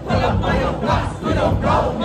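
Party crowd shouting and chanting along over loud dance music with a heavy, rhythmic bass beat.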